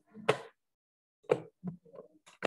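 A few short, sharp knocks: a loud one near the start, another about a second later, then smaller ones near the end.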